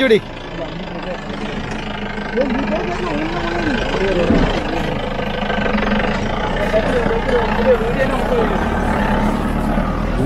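Mahindra Bolero's diesel engine running under load as the 4x4 crawls through a deep muddy rut, growing steadily louder as it nears. Voices call out over it.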